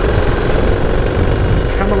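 Motorcycle engine running at a steady road speed, mixed with loud wind and road noise while riding. A man's voice starts near the end.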